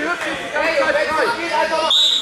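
Spectators chattering in a sports hall, several voices talking over one another. A whistle blast starts right at the very end.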